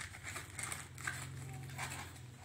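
Thin cardboard being rolled into a tube by hand, with a sharp crackle at the start and then a few brief scrapes and creaks as the card is pressed and turned. A steady low hum lies underneath.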